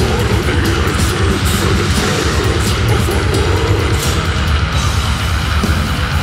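Extreme heavy metal music: loud, dense distorted electric guitars over heavy drums, with no let-up.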